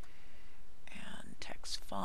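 A man's voice muttering quietly, half-whispered, starting about halfway in, over a steady background hiss.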